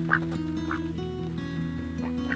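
Background guitar music with steady held notes, over which a white Pekin duck gives two short quacks, one right at the start and one less than a second in.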